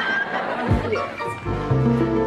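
Studio audience laughing, then a short music bridge for the scene change, with held chords coming in about one and a half seconds in.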